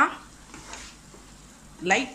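Eggs and masala sizzling faintly as they fry in a nonstick pan, stirred with a wooden spatula. A man's voice breaks off at the start and comes back near the end.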